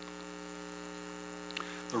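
Steady electrical mains hum from the microphone and sound system, a low buzz made of several even tones that holds unchanged throughout.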